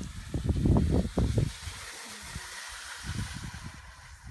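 Wind buffeting the microphone in uneven low rumbles, heaviest in the first second and a half and again near the end, over a steady hiss of cross-country skis gliding on packed snow.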